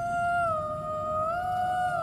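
A woman's voice holding one long wordless sung note, which steps down in pitch and then back up, over a low rumble. It is a witch's vocal spell-casting tone.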